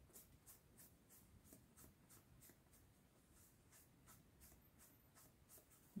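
Faint, quick scrubbing strokes of a small sponge rubbed back and forth over a latex-coated foam block, about four strokes a second, as silver acrylic paint is brushed on.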